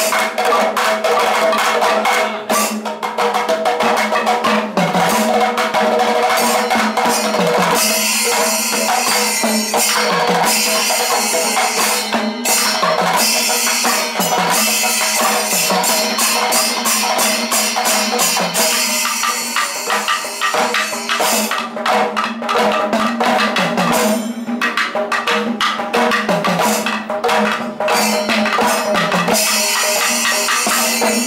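Kerala Panchavadyam temple ensemble playing: maddalam barrel drums and timila hourglass drums struck by hand in a fast, dense, unbroken rhythm, with ilathalam hand cymbals clashing over them.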